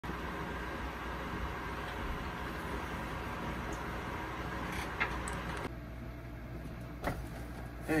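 Steady background hum of room noise with a short click about five seconds in, then a sudden drop to quieter room tone with a single knock near seven seconds.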